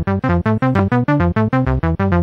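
Synth bass line played by FL Studio's channel arpeggiator: single held keys (C, F and G) are turned into a fast run of major-chord notes, about seven or eight short notes a second, stepping up and down across octaves.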